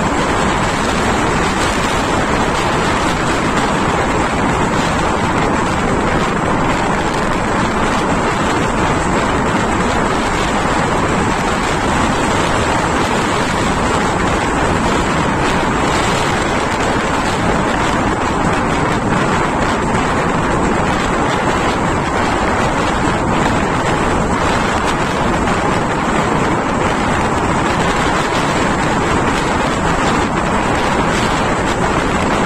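Steady running noise of a moving passenger train heard at an open coach window: the rush of the train on the track mixed with wind buffeting the microphone.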